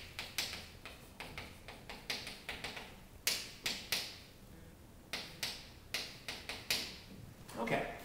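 Chalk writing on a blackboard: a couple of dozen short, sharp scratching and tapping strokes in uneven bursts as a phrase is written letter by letter.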